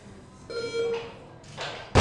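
Weightlifter cleaning a 75 kg barbell: a short shout about half a second in, then a loud thud at the very end as her feet stamp down and the bar lands on her shoulders in the catch.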